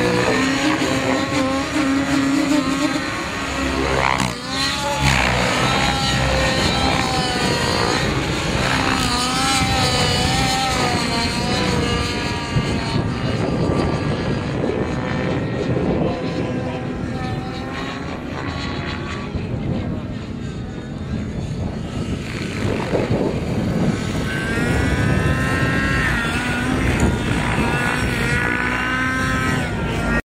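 Radio-controlled model helicopter flying overhead: its motor and rotor blades run continuously, the pitch repeatedly rising and falling as it manoeuvres.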